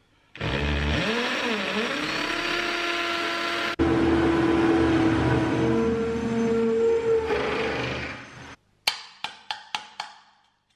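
Cordless drill with an SDS masonry bit drilling through a blockwork wall, its motor pitch dipping under load about a second in; it stops about three-quarters of a second before the metal clicks begin. Near the end come a few sharp metallic clicks of pliers working the knockout plug on a galvanised steel back box.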